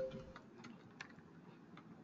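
Faint, irregular clicks of a computer keyboard and mouse as a few characters are typed and a cell is clicked.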